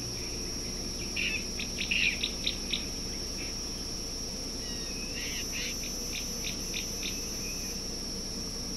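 Steady high-pitched insect drone, with a bird calling in short, quick repeated notes: one run of about eight notes from about a second in, and another from about five seconds in.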